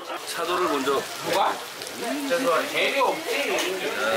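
People talking, with food sizzling in a hot pan on a tabletop burner underneath.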